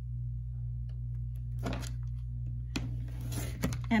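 Handling sounds of a clear acrylic quilting ruler on a cutting mat over a steady low hum. There is a soft brush about a second and a half in, a sharp click near three seconds, then rustling and small knocks near the end as the rotary cutter is picked up.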